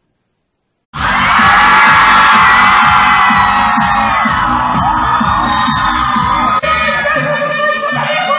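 After about a second of silence, a loud stage-musical number cuts in abruptly: a woman singing over a pop backing track with a steady beat, recorded from the audience in a theatre.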